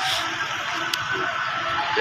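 Steady outdoor background hiss with faint, indistinct pitched sounds underneath and one sharp click about a second in.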